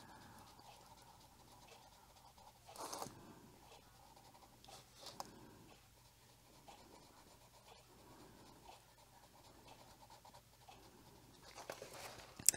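Faint, light scratching of a colored pencil shading on paper, with a couple of brief louder strokes about three and five seconds in.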